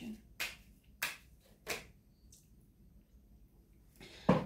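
Three short, sharp clicks about two-thirds of a second apart, each over almost at once, followed by near silence.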